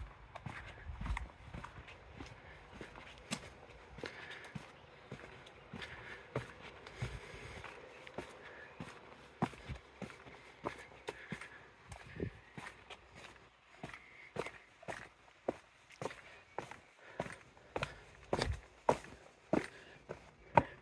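Footsteps of a walker on a stone-paved path and steps strewn with loose grit, a steady walking pace of shoe-on-stone steps. They grow louder and sharper near the end.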